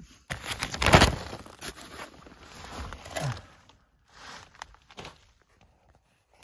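Rustling, crinkling and scraping of plastic ground sheeting and dirt as a person shifts about on a crawl-space floor. It is loudest about a second in and dies down to quiet near the end.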